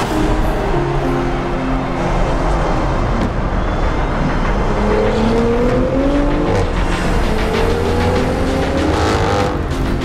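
Performance car engine revving hard, its pitch climbing in two rising pulls about five and about eight seconds in, over dramatic soundtrack music.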